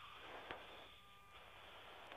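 Near silence: faint hiss of a radio channel between transmissions, with one brief click about half a second in.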